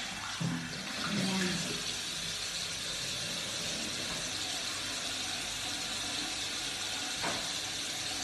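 Bathroom sink tap running steadily, water pouring into the basin.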